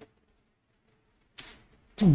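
Quiet room, then about a second and a half in a brief sharp hiss: a quick breath drawn by the speaker on his clip-on microphone just before he talks.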